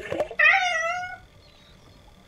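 A cartoon cat meowing: a short rising note at the start, then one wavering meow of under a second that fades out.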